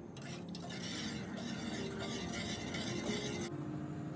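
Metal spoon stirring sugar syrup in a stainless steel pot, a continuous scraping swish that stops abruptly near the end.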